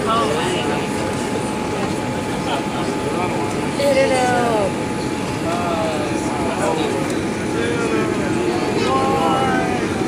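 Steady rumble inside a Boeing 787-8 airliner cabin as it touches down and rolls out along the runway, with voices over it.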